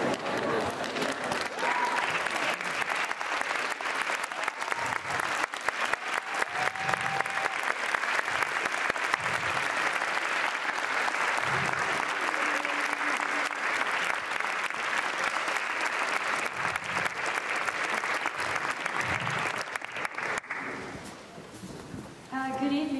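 Audience applauding in a large hall, steady clapping that dies away near the end.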